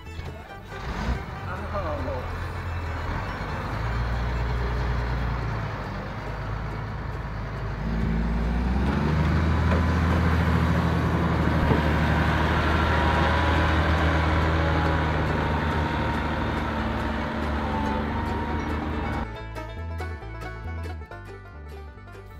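Case IH 7220 tractor's diesel engine running under load as its front blade pushes chopped silage, the engine note climbing about eight seconds in and then holding steady. Near the end it gives way to a short bit of music.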